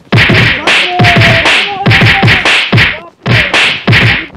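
Rapid run of loud punching and kicking whacks, roughly three a second, in a staged beating of a man on the ground.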